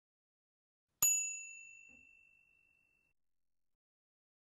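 Notification-bell chime sound effect: one bright ding about a second in, ringing out and fading over about two seconds.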